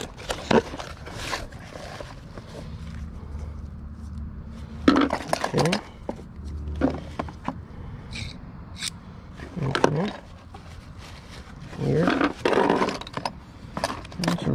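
Small trinkets and plastic toys being rummaged through in a cardboard box: scattered clicks, light clinks and cardboard rustling, with a few brief indistinct vocal sounds.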